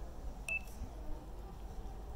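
A single short high electronic beep about half a second in, over a low rumbling background.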